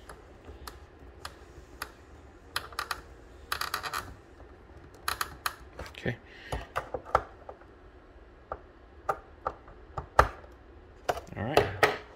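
Small screwdriver tightening screws into the plastic back of a Tesla Wall Connector faceplate: scattered light clicks and ticks, a quick run of them about four seconds in, and a sharper knock near the end.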